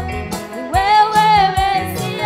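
Live gospel worship music: a woman sings lead into a microphone, holding one long note through the second half, over bass guitar and a steady drum beat.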